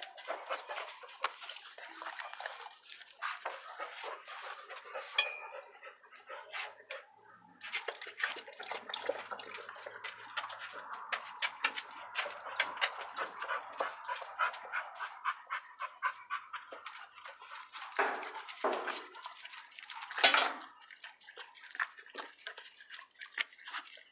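Dogs close to the microphone: fast panting and snuffling with many small wet licking clicks, while a hand rubs a dog's coat. A few short, louder dog sounds come about three-quarters of the way through.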